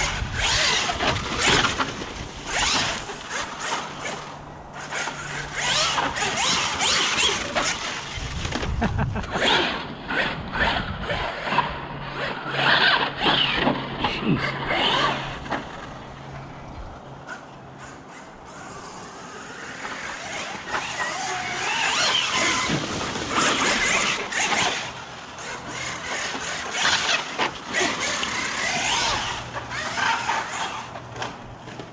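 Losi Super Baja Rey 2.0 large-scale electric RC desert truck driven hard on a dirt track: the brushless motor whines, rising and falling with the throttle, over a constant crackle of tyres and dirt. It goes quieter for a few seconds midway, then picks up again.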